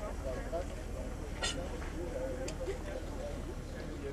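Indistinct background chatter of people's voices, with a steady low hum underneath.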